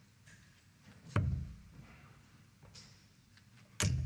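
Two steel-tip darts thudding into a bristle dartboard, about two and a half seconds apart, with quiet room tone between them.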